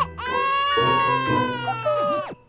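A cartoon character's baby-like wailing cry: one long, high, held wail that starts just after a short break, over background music.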